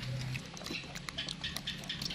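Macaque monkeys eating longan fruit: small clicks and crackles of thin shells being bitten and peeled, with wet chewing sounds.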